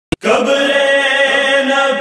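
Voices holding a steady chanted drone note, the unaccompanied vocal backing that opens a noha lament, preceded by a brief click at the very start.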